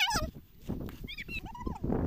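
Short high-pitched shouts of children: one at the start, then two brief cries about a second in, over a low rumble of wind on the microphone.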